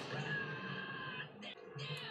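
A boy's high, drawn-out whimpering cry over soft background music from an anime soundtrack; it breaks off briefly about a second and a half in, then resumes.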